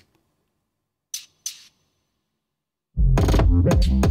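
Hip-hop drum beat playing back from a mix session: two short percussion hits about a second in, then about three seconds in a loud 808 bass and kick drum pattern with snares comes in.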